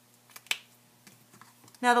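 A single sharp click about half a second in, with a smaller click just before it and a few faint ticks later, from objects being handled on a tabletop.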